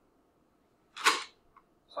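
A single short, sharp burst of noise close to the microphone about a second in, out of near silence.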